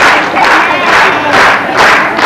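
Audience clapping in unison, a steady rhythmic applause of about two claps a second.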